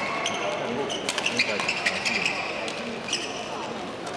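Badminton hall sounds: court shoes squeaking in many short high chirps on the court mats, with sharp clicks of rackets hitting shuttlecocks, under voices.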